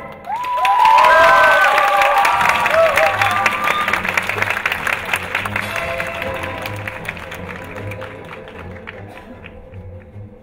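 Theatre audience applauding, with whoops and cheers in the first few seconds, at the end of a sung musical number. The clapping gradually thins and fades. A quiet, low pulsing music cue plays underneath from a few seconds in.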